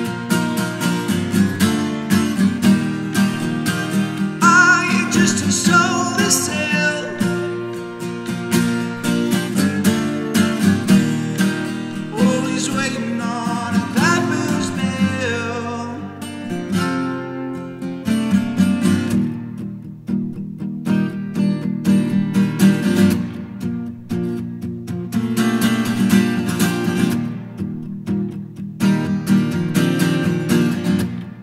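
Capoed steel-string acoustic guitar strummed in a steady rhythm through a song's instrumental break, with a higher, bending melody line over it in the first half. The playing thins out for a few seconds past the middle, then the full strumming returns.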